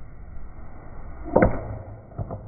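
A baseball bat striking a pitched ball in a batting cage: one sharp crack about one and a half seconds in.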